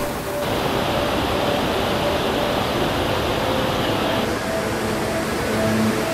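Rushing white water of a rocky mountain river in rapids, a steady, even roar, with faint background music underneath.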